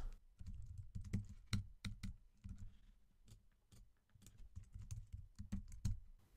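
Faint, irregular keystrokes on a computer keyboard, single taps and short runs of clicks with quiet gaps between them, as code is edited.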